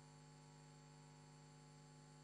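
Near silence, apart from a faint steady electrical hum with many overtones.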